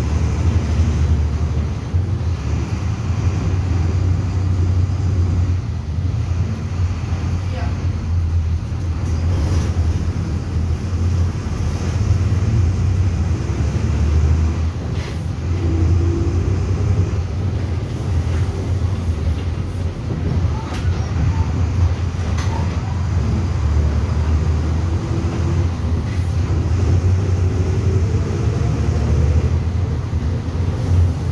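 Inside a moving Volkswagen 17-230 EOD city bus: the diesel engine runs under load with road and body noise. The engine note climbs about halfway through and again near the end as the bus accelerates.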